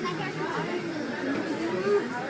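Indistinct chatter of several voices talking at once, with no words clear enough to make out.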